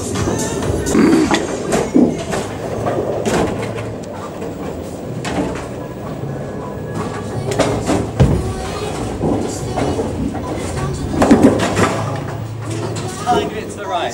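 Busy bowling alley din: background music and people's voices, with repeated knocks and clatter from balls and pins.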